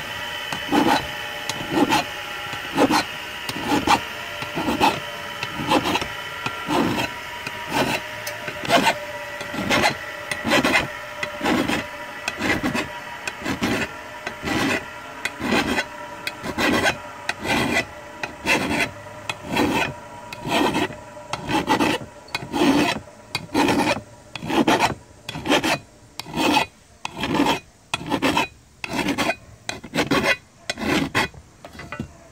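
Hand file scraping along the cutting edge of a steel John Deere Z345R mower blade in repeated strokes, about one a second and quickening toward the end. The blade is being filed after grinding to true the edge angle and make it extra sharp.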